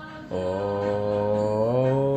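A man chanting a long, drawn-out 'Om' in a low, steady voice, starting about a third of a second in and rising slightly in pitch near the end, over faint background music.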